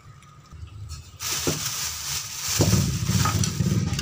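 Plastic bag rustling and crinkling as hands reach in and pull out aerosol spray-paint cans, with a couple of light knocks. A low rumble sits underneath from about halfway.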